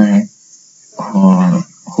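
A man's lecturing voice in short phrases with pauses, over a steady high-pitched hiss that runs under everything.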